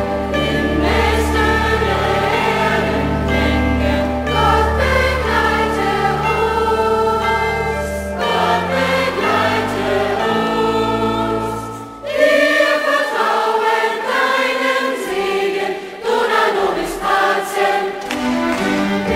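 Massed children's choir singing a short liturgical call with instrumental accompaniment. Sustained low accompanying notes drop out a little before halfway, and the singing pauses briefly twice in the second half between phrases.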